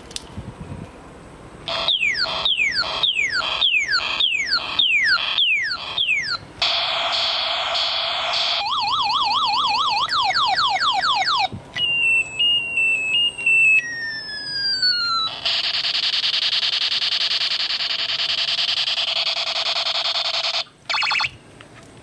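Battery-powered musical toy gun playing its electronic sound effects from a small speaker: a run of about ten falling laser zaps, then a buzzing tone, a fast warbling siren, stepping beeps, a few more falling zaps, and a long steady buzz that cuts off near the end.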